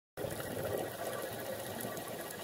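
Steady underwater ambient noise, an even rush of water heard through a camera's dive housing.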